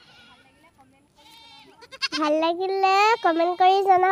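A young girl's high-pitched voice in long, drawn-out syllables, loud from about two seconds in. The first two seconds are quiet apart from a faint voice.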